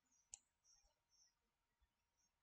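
Near silence with a single faint computer-mouse click about a third of a second in.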